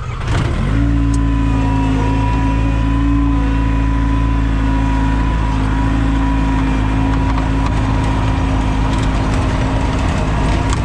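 John Deere 675B skid steer's diesel engine revving up about half a second in, then running steadily at high throttle, with a faint steady whine over it.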